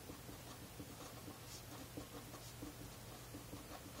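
Sharpie felt-tip marker writing on paper: faint, short, scratchy strokes as a word is written out.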